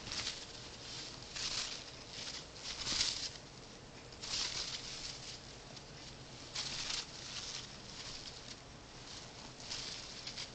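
A macaw's wings, tail and feet rustling and scuffing against a cloth blanket in irregular bursts every second or two, as it rocks on the blanket in a male mating display.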